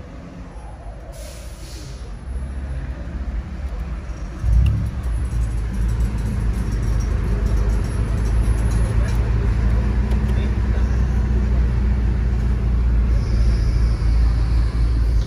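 BMW engine starting with a sudden burst about four and a half seconds in, then idling steadily with a low rumble through its sports exhaust.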